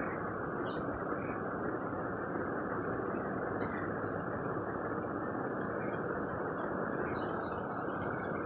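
Steady low background rush of room or outdoor ambience, with faint, brief high chirps scattered through it.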